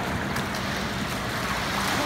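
Swimmer's front-crawl arm strokes and flutter kicks splashing in a pool, a steady wash of water noise.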